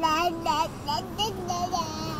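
Toddler babbling in a sing-song voice: a run of short syllables that rise and fall in pitch.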